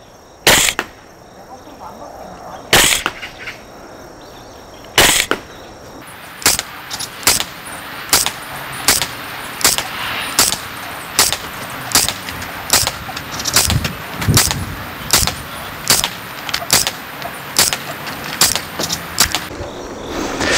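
Tokyo Marui MTR-16 gas blowback airsoft rifle firing single shots, each a sharp pop with the bolt cycling. Three shots come about two seconds apart, then a steady string follows at a little over one shot a second, emptying a 20-round magazine.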